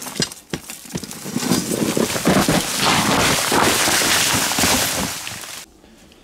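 Digging and scraping at a quartz-bearing rock face: a dense, crackly rattle of loose grit, soil and small stones being scraped and falling, which stops suddenly near the end.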